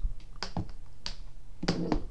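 Handling noise from a desk microphone being grabbed and repositioned on its stand, picked up by the mic itself: about six sharp clicks and knocks at uneven intervals.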